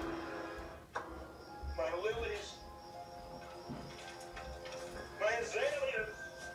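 A television drama's soundtrack played through a TV speaker: eerie background music with held tones, a click about a second in, and two short wordless vocal cries, one about two seconds in and one near the end.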